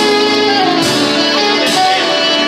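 Live polka band playing dance music, with an electric guitar prominent among the instruments.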